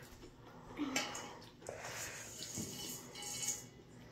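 Faint mouth sounds of a child licking and eating melted nacho cheese off a spatula, a few soft separate noises spread over the seconds.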